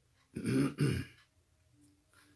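A man clearing his throat: two short rough rasps in quick succession, starting about a third of a second in.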